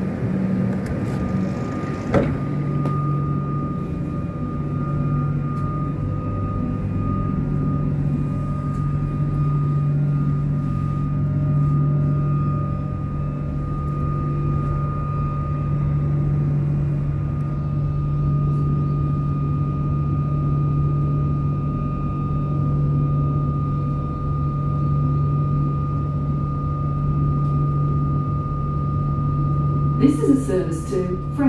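Steady hum with a constant whine from an electric suburban train's onboard equipment while it stands at the platform, heard from inside the carriage. A single sharp knock about two seconds in.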